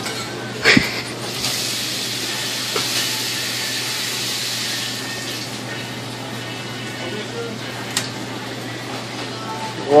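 Fish-market workroom ambience: a steady low hum and a wash of hiss, stronger in the first half, with a couple of light knocks of a knife against the cutting board as a large opah is filleted. Faint music sits in the background.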